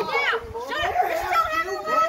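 Speech only: a high-pitched voice shouting without a break, the words not made out, with a second voice overlapping at times.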